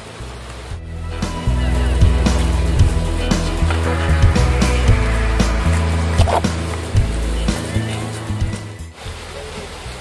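Background music with a heavy bass line and a beat. It starts about a second in and stops suddenly near the end.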